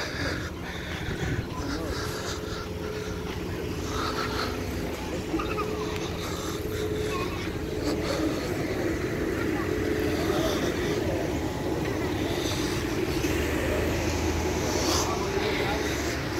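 Outdoor parking-lot ambience: a steady low rumble like traffic, with indistinct voices of people nearby that grow more frequent toward the end.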